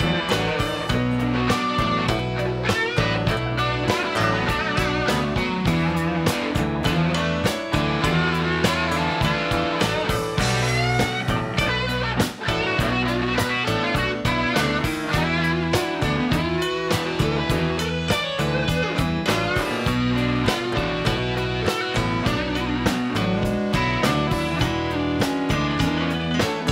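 Live band playing an instrumental passage without vocals: electric guitar lines over strummed acoustic guitar and a steady drum beat.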